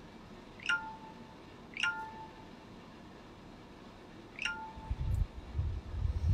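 An electronic notification chime sounds three times, each a quick high chirp that steps down to a short held lower tone; the first two come about a second apart, the third a few seconds later. Near the end, a few low thumps and rumbling.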